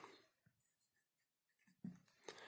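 Faint marker strokes on a whiteboard, in near silence, with one brief louder sound just before the end.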